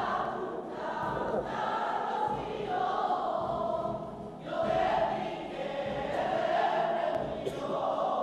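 A choir singing in long held notes, with a short break between phrases about four seconds in.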